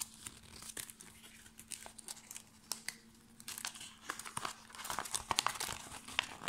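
Folded paper instruction leaflet being unfolded and handled, rustling and crackling in irregular bursts that grow busier over the second half.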